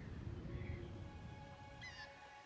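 Film soundtrack: a low rumbling ambience with three short chirps over it, as a soft sustained musical chord fades in about half a second in.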